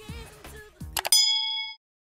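Subscribe-button sound effect: soft clicks, then a sharp mouse click about a second in followed by a bright bell-like notification ding that rings for about half a second and cuts off.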